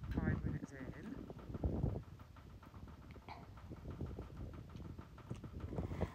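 Faint outdoor background with quiet, indistinct voices over a low, uneven rumble.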